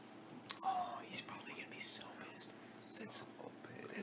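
Quiet whispered speech, with a sharp click about half a second in.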